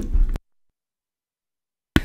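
A brief low rumble, then the audio cuts to complete silence for about a second and a half, a break in the recording, ending with a click as the sound comes back.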